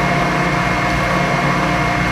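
Milling machine running steadily, with a constant high whine over a low hum. The table is being hand-cranked to feed a dovetail cut in a welded-up steel tool block.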